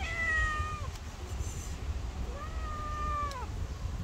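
A cat meowing twice: a short call right at the start that falls slightly in pitch, and a second, slightly longer call that rises and falls, beginning a little past two seconds in.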